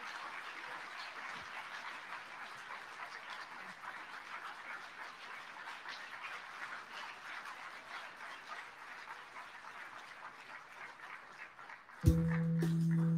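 Audience applauding, a fairly quiet, steady patter of many hands that tapers off near the end.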